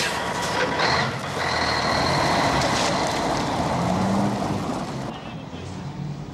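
Car engine running loudly as the car pulls away, fading near the end.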